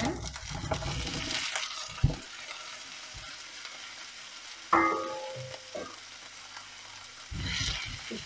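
Raw guvar beans tipped into hot oil in a non-stick frying pan, sizzling loudly as they land, then a steady frying sizzle. A knock about two seconds in and a short ringing clink about five seconds in; near the end a wooden spoon starts stirring the beans in the pan.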